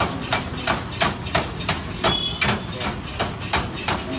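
Long knife and metal scraper chopping shawarma chicken on a steel tray: a quick metallic clatter of about four strikes a second.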